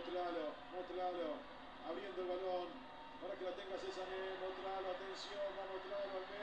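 A man's voice giving football match commentary from the TV broadcast, talking in steady phrases and sounding thin, as from a speaker playing the match.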